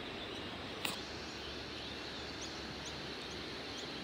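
Steady outdoor background noise with faint, short, high bird chirps repeating every few tenths of a second in the second half, and a single click about a second in.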